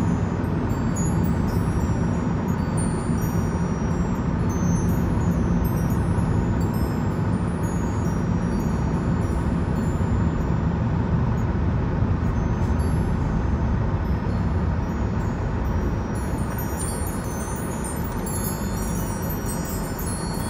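Steady road and engine noise heard from inside the cabin of a moving car.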